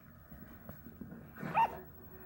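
A four-week-old toy poodle–chihuahua cross puppy gives one short, high-pitched yip about one and a half seconds in.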